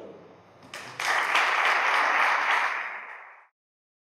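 Audience applauding: a few scattered claps, then full applause about a second in, which cuts off suddenly shortly before the end.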